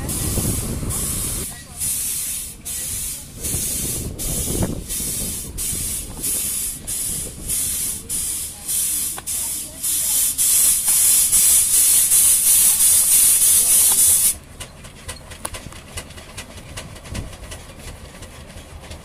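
Steam roller venting steam in rhythmic hissing puffs, about one and a half a second. The puffs run together into an almost continuous hiss and then cut off suddenly about three-quarters of the way through.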